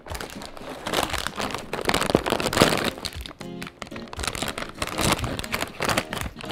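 Shiny plastic Toonies snack bag crinkling as it is picked out of a pile of bags and pulled open at the top, with background music underneath.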